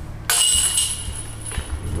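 A putted disc hitting the chains of a disc golf basket: a sudden metallic jingle about a quarter second in, ringing on and fading over a second or so as the putt drops in.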